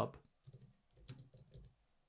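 Keystrokes on a computer keyboard: a short, soft run of key clicks as the words "New job" are typed.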